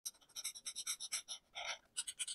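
Alcohol marker nib scratching across paper in quick short colouring strokes, about four a second, with one longer stroke near the end.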